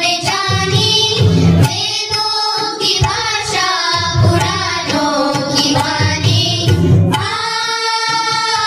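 Children singing a devotional prayer song over instrumental accompaniment, ending on a long held note.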